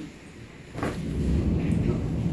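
Thunder rumbling low, starting under a second in and carrying on steadily.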